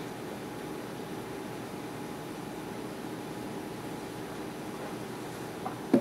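Steady, faint room hum with a few even tones, like an air conditioner or appliance running. Just before the end comes one brief, soft knock as a drinking glass is set down on a wooden stand.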